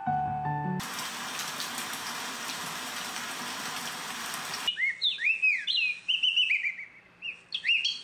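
Tribit Home Speaker playing its built-in sleep sounds one after another, each cutting off abruptly. First a brief tail of soft music, then a rain recording as a steady hiss for about four seconds, then recorded birdsong chirping for the last three seconds.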